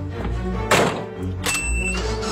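A van door slamming shut about a second in, the loudest sound, over steady background music. A second, lighter knock follows near the end.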